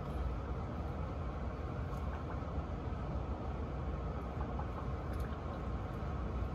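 Hot water poured from an electric kettle into an HVAC condensate drain line, a steady rushing flow that flushes bleach and mildew out of the pipe, over a constant low hum.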